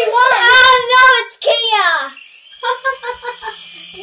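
A boy's voice singing and yelling without words, sliding down in pitch in the middle, then a quick run of short repeated notes near the end.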